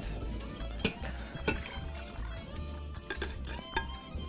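Tomato sauce poured from a glass bowl into a stainless steel pot, with a metal spoon clinking against the bowl a few times as it scrapes the sauce out. Quiet background music runs underneath.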